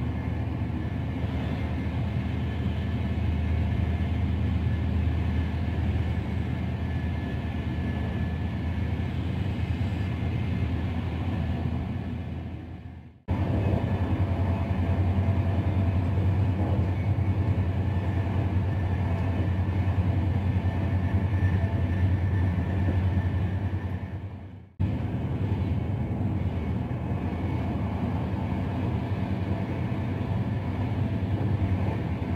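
Steady low rumble of a VR electric intercity train running at speed, heard from inside a carriage, with a faint high whine over it. The sound fades out and returns abruptly twice, about 13 and 25 seconds in.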